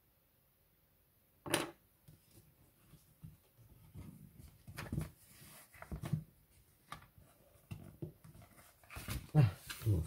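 Quiet handling sounds of a fabric-covered book cover and cardboard being moved about on a cutting mat: scattered soft rustles and taps, with one brief, louder sound about a second and a half in.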